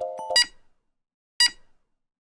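Countdown timer beeps: two short electronic beeps about a second apart, with silence between them.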